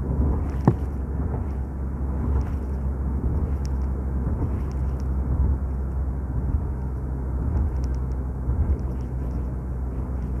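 Steady low rumble of a vehicle's engine and tyres at highway speed, heard from inside the vehicle, with a brief knock just under a second in.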